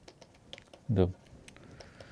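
Stylus tapping and scratching on a tablet screen during handwriting: a run of faint, light clicks with a short scratch near the end. One spoken word about a second in.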